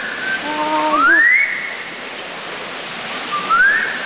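A man whistling to a Eurasian golden oriole, imitating its song: two rising, sliding whistles, one about a second in and one near the end, over a steady background hiss.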